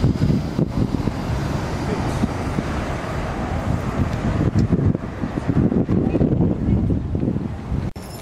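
Wind buffeting the microphone as an uneven, loud low rumble, with crowd voices mixed in; the rumble cuts off suddenly at the end.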